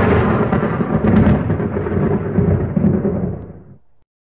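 A long, loud rumble of thunder that dies away shortly before the end.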